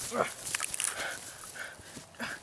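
A brief voice sound, falling in pitch, just after the start, then light scuffing steps of a person running across grass.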